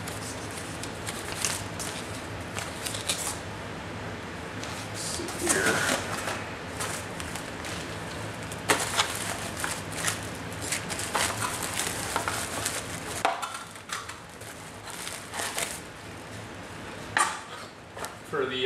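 Paper and cardboard packaging rustling and crinkling as a small boxed CPU water block is unpacked by hand, with scattered clicks and handling knocks over a steady low hum.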